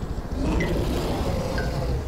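Cartoon helicopter sound effect: rotor chopping over a low engine rumble that grows louder about half a second in.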